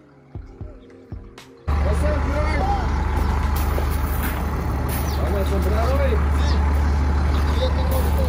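Faint background music and a few footsteps. About two seconds in, it gives way to the loud, steady low rumble of an idling vehicle engine, with faint voices over it.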